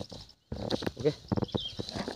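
Rustling and crackling of leaves and twigs being handled close to the microphone as the foliage around a low bird's nest is moved, with a brief moment of silence just before half a second in.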